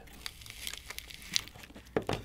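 Faint crinkling and crackling as the Samsung Galaxy S20 Ultra's glued-in battery is prised up, its thick adhesive stretching and peeling away, with scattered small clicks and one sharper click near the middle.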